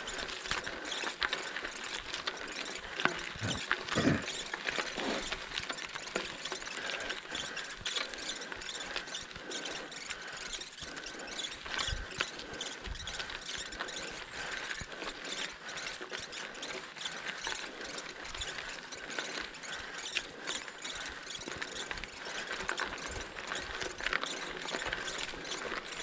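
Bicycle rolling over a gravel logging road: tyres crunching and the frame and bars rattling over stones, with a few louder knocks about three to five seconds in. A steady squeal sounds throughout.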